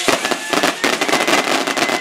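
A string of firecrackers going off in a rapid, dense run of sharp pops.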